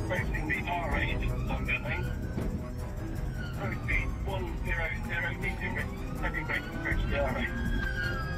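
Police car siren wailing, rising and falling slowly, under a dramatic music soundtrack and engine and road noise from a pursuit at about 100 mph.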